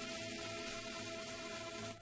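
Recorded music played from a 7-inch vinyl single on a turntable: a sustained instrumental chord over record surface hiss, which breaks off sharply at the very end.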